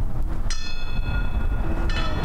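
A bell-like metal percussion instrument struck twice, about a second and a half apart, each strike ringing on brightly before fading. Wind rumbles on the microphone underneath.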